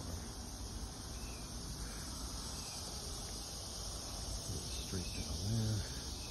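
Steady outdoor background of insects buzzing in summer greenery, with a low rumble underneath as the phone is carried.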